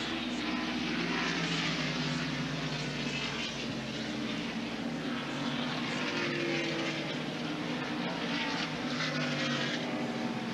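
NASCAR Winston Cup stock cars' V8 engines running at speed around the road course, heard as a steady, layered engine drone.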